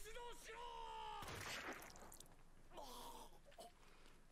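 Faint character dialogue from the anime playing at low volume: a drawn-out voice, a short burst of noise about a second and a half in, then more voice near the end.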